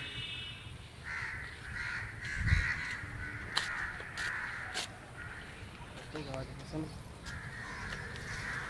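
Crows cawing repeatedly, harsh calls one after another, with a dull bump about two and a half seconds in.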